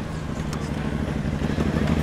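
A steady low engine drone that slowly grows louder.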